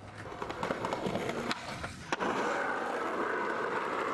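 Skateboard wheels rolling on pavement, a steady gritty rolling noise with a few sharp clicks in the first half. It gets suddenly louder about halfway through.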